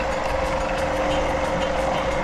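Electric food processor running steadily, a constant whirring hum with no change in speed, its blade chopping raw salmon and soaked burghul into a paste.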